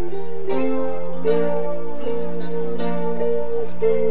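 Live rocksteady band playing an instrumental passage: sustained chords over a bass line, with electric guitar.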